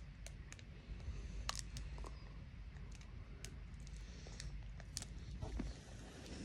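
Faint, scattered clicks and small crackles as a chocolate bar is chewed and its foil wrapper is handled.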